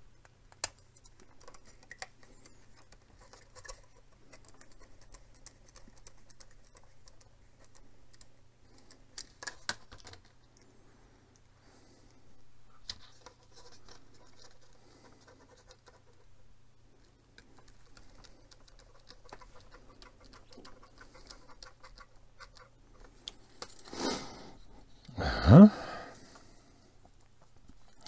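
Small plastic model parts being handled and screwed together with a small screwdriver: faint scattered clicks, taps and scratching. Near the end, a much louder sound with a steeply falling pitch.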